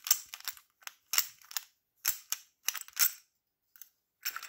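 Ratchet screwdriver with a hollow plastic handle being twisted in the hands as its screw-on end cap is unscrewed to reach the bits stored inside: four short bursts of clicking and rattling, then a faint tick near the end.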